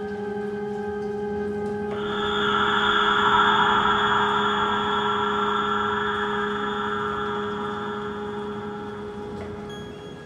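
Dark ambient music: a sustained low drone, joined about two seconds in by a brighter, noisier layer that swells and then slowly fades away.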